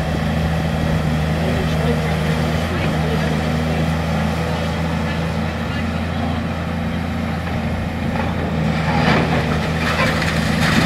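Diesel engine of a Volvo tracked demolition excavator running steadily with a low hum. Near the end comes a spell of crunching and clatter as concrete rubble breaks and falls.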